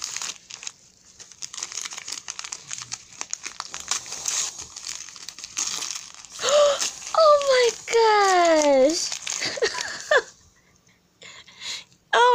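Wrapping paper crinkling and rustling as a small gift is unwrapped by hand, for about six seconds. Then a voice gives a few long, falling exclamations.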